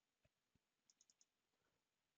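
Near silence, with a quick run of about four very faint keyboard clicks about a second in.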